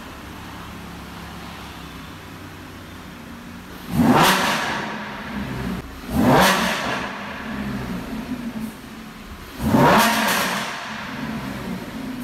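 Lamborghini Huracán's 5.2-litre V10 idling, then revved hard three times: about four, six and ten seconds in. Each rev climbs quickly in pitch and falls back to idle.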